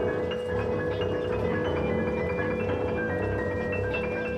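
Grand piano played with quick, scattered short high notes over a steady held mid-pitched tone that does not fade.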